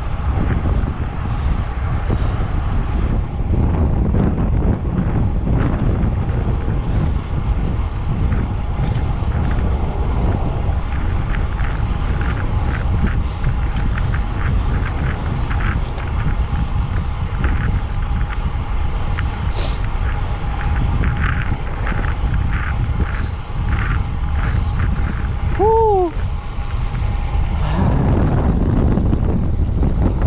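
Wind buffeting the microphone of a road bike riding at about 35 km/h, a loud, steady low rumble. A brief falling chirp cuts through near the end.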